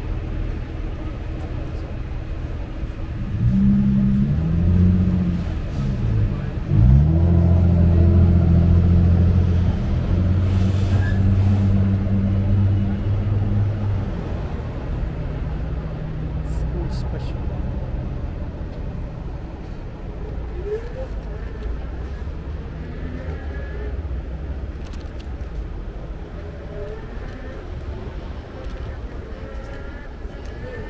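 Street traffic at an intersection: a motor vehicle's engine runs loudly close by from about three and a half seconds in until about fourteen seconds, its pitch bending a couple of times before holding steady. It then eases back to a lower, steady traffic rumble.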